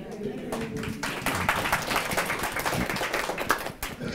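A small audience clapping. It starts about half a second in, is fullest through the middle and dies away near the end, with some voices mixed in.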